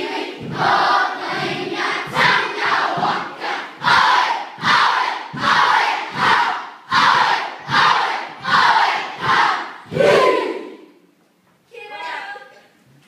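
Children's kapa haka group chanting a haka in unison: a rhythmic shouted chant of many voices, a little under two strong beats a second. It ends with a longer final call near the end.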